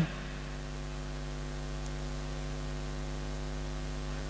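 Steady electrical mains hum from the sound system, a low buzz with many overtones and a faint hiss.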